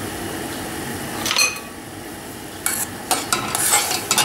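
A metal spoon clinks once against a stainless steel pot with a brief ring about a second and a half in. From near the end it scrapes repeatedly around the pot, stirring the thickening kiwi-and-orange jam.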